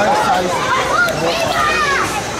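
Several children's voices at play, calling and chattering over one another in a high pitch, with no single voice standing out.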